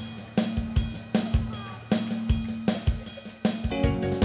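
Instrumental break in a pop dance backing track, with a drum kit playing a steady beat of kick and snare hits over a bass line.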